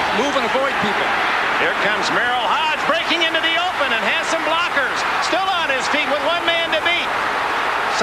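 Football stadium crowd cheering and shouting on old NFL broadcast audio, many voices at once over a dense roar.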